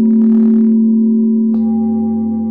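Singing bowls ringing in a sound bath, several long sustained tones with a deep low one strongest. Another strike about a second and a half in adds a fresh set of higher ringing tones over the fading ones.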